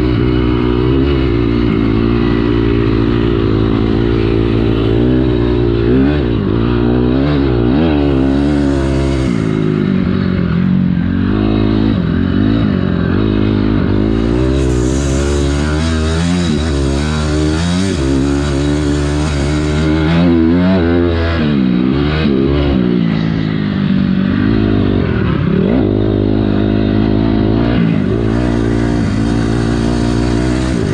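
A 2006 Honda CRF250R four-stroke single-cylinder dirt bike ridden hard around a motocross track, heard from on the bike. Its engine revs rise and fall repeatedly as the throttle is worked through the gears and corners.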